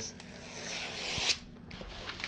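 Hands sliding and rubbing across a large sheet of low-acid wrapping paper. The rustling hiss builds for about a second and then stops abruptly, followed by faint light rustles.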